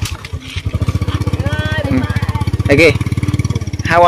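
A small engine running with a fast, even beat that comes in about half a second in and holds steady.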